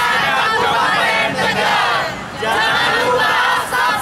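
A group of young men and women singing a football club anthem together in unison, loud, with a short break between phrases about two seconds in.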